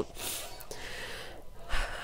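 A woman breathing audibly in a pause between sentences: a soft breath through most of the pause, then a stronger breath in just before she speaks again. It is the unsteady breathing of someone upset.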